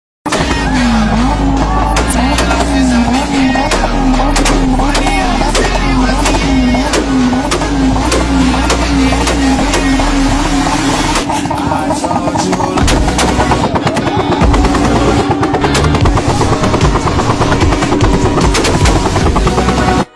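Toyota Supra MK4's turbocharged inline-six held at high revs, its note wavering up and down about one and a half times a second for the first half and then holding steadier. Rapid loud pops and bangs come from the exhaust as it spits flames.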